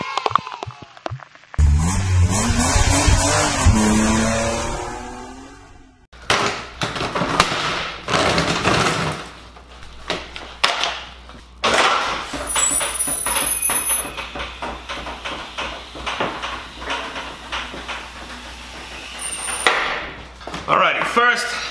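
A short intro sting of music with a revving, engine-like sound effect, fading out after a few seconds. Then come a run of clicks, knocks and rustles as items are handled and set down on a plastic workbench, including a bagged windshield repair kit.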